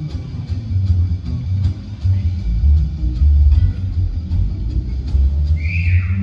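Live jazz combo of upright double bass, drums, piano and guitar playing; the upright bass line dominates the low end, with light drum strokes over it. A single high note sounds near the end.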